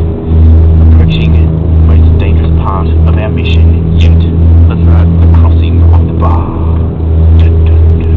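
Yacht's inboard engine running, a loud steady low drone heard from inside the cabin, with scattered small clicks and knocks.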